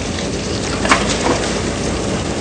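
Chopped onions tipped from a bowl into a hot pan, with a steady sizzling hiss and a light clatter about a second in.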